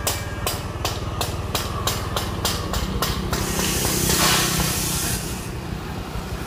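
A vehicle engine running steadily at low speed, with a string of irregular sharp clicks over the first half and a broad rush of noise for about two seconds after the middle.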